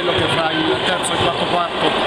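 A man speaking Italian, his voice continuing mid-sentence over a steady background hubbub.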